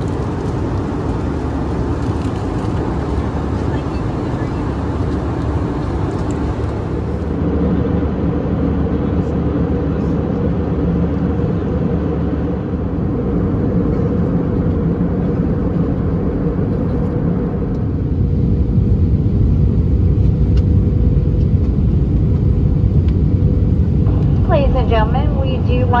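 Steady roar of an Airbus A319's jet engines and rushing air heard inside the cabin, with a faint steady hum. The noise changes character slightly about 7 and 18 seconds in.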